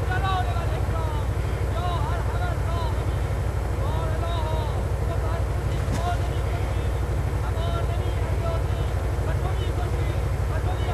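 Heavy missile launcher truck's engine running steadily: a low, even rumble, with faint voices over it.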